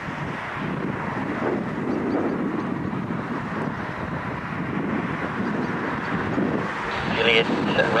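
Steady rushing noise of a distant aircraft, mixed with wind on the microphone.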